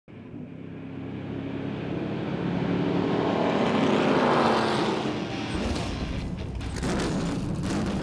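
Race car engines sweeping past, building to a peak about halfway and then fading. This is followed by a low steady rumble with a few sharp clicks near the end.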